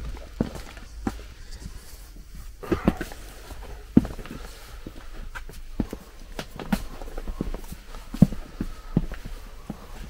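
Footsteps on a hard floor: an irregular string of soft steps and light knocks, the sharpest about four and eight seconds in.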